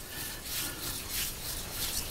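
A hand rubbing dry spice rub over the fat side of a raw pork belly slab on a wooden cutting board: a few faint, soft rubbing strokes.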